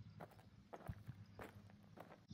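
Near silence: faint outdoor room tone with a few soft, scattered taps.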